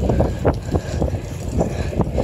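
Wind buffeting the microphone of a phone carried on a moving bike, a low rumbling with irregular knocks and rattles from the ride over asphalt.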